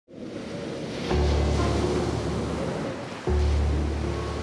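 Ocean surf breaking on rocks, a steady rush of sea noise that fades in at the start. About a second in, deep held music notes come in over it, and a second one enters a little after three seconds.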